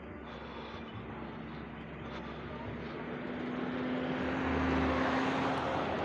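Engine of a small motorized shuttle vehicle running as it comes down a dirt hill road, a steady drone that grows louder over the last few seconds as it approaches.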